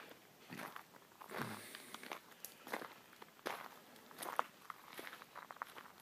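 Faint, irregular footsteps crunching on gravel, with a low thump about a second and a half in.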